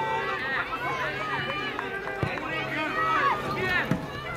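Many high children's voices shouting and calling across a football pitch during a youth match, overlapping one another. Two short knocks cut through, one about halfway and one near the end.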